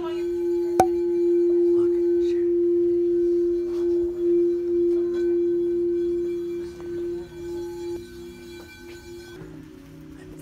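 Frosted crystal singing bowl rubbed around its rim with a mallet, sounding one steady, sustained low tone that swells in over the first second or so and fades away near the end. A sharp click from the mallet on the bowl comes just under a second in.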